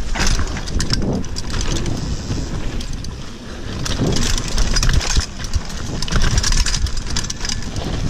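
Mountain bike ridden fast down a dirt forest trail: heavy wind rumble on the rider-mounted microphone, tyres on dirt, and the bike rattling over bumps with frequent clicks and knocks.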